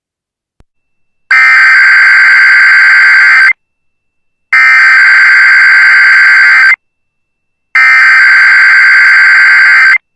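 Emergency Alert System SAME header data bursts: three loud, identical two-second bursts of warbling digital tones, about a second apart. This is the header sent three times to open an emergency alert message.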